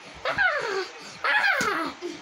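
A child's high-pitched whining cries, two in quick succession, each sliding down in pitch, during rough play-wrestling.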